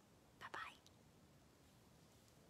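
A brief whisper about half a second in, then near silence: room tone.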